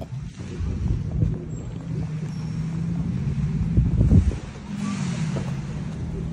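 Outdoor low rumble with a steady low hum, wind buffeting the phone's microphone, uneven in level with a stronger gust about four seconds in.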